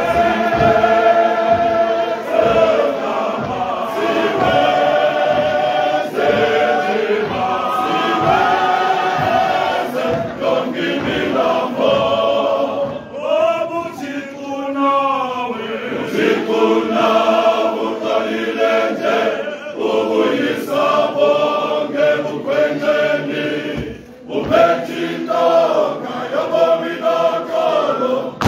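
Men's voice choir singing in harmony: full, sustained chords, with a stretch of wavering, sliding pitch about halfway through.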